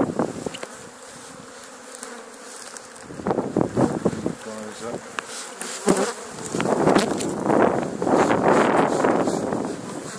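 Honeybee swarm buzzing: a dense, steady hum of many bees flying around a swarm that has just been knocked from its branch onto a sheet and into a box. Louder noisy bursts come and go over it, about three seconds in and through most of the second half.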